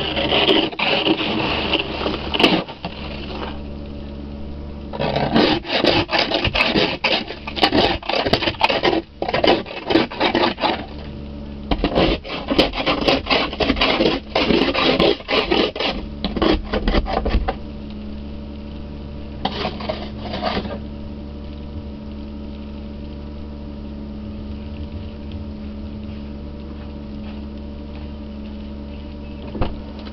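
Ice scraper rasping snow and ice off a car windshield, heard through the glass from inside the car, in several bouts of quick strokes. Under it runs the steady hum of the idling car, which is left alone after the scraping stops about two-thirds of the way through.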